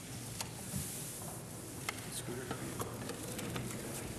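Hearing-room background noise: scattered sharp clicks and the rustle of papers and people moving about, over a low murmur.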